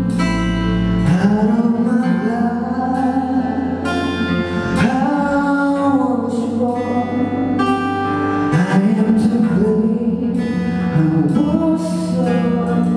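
A small acoustic band playing a song live: a man singing into a microphone over strummed acoustic guitar, bass guitar and percussion struck with sticks.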